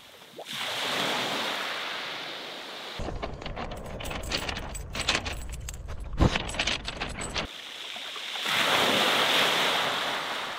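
Waves washing on a shingle beach. About three seconds in this gives way to a dog walking over pebbles close by, the stones clicking and clattering under its paws over a low rumble of wind on the microphone. The wash of the sea returns for the last couple of seconds.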